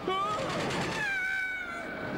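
High-pitched cartoon voices crying out on a fairground ride: a short rising cry at the start, then a longer held cry that slowly falls in pitch from about a second in.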